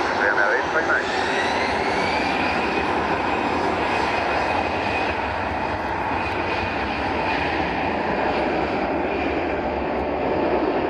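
Airbus A320 airliner's CFM56 turbofan engines running loudly and steadily as the jet rolls along the runway after landing, with a whine rising in pitch over the first couple of seconds and then holding.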